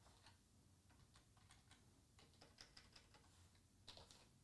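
Faint computer keyboard typing: a quick, irregular run of light key clicks.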